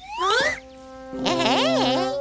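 Cartoon sound effects: a quick rising pitched glide, then from about a second in, held steady notes with pitched sounds swooping up and down over them.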